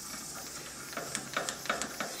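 A few faint, short metallic clicks and taps in the second second as the socket and extension are settled on the compressor valve held in the vise. The impact wrench is not yet running.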